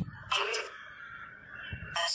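Spirit box sweeping through radio stations: a steady radio hiss broken by short, harsh bursts of noise, one about a third of a second in and another at the end.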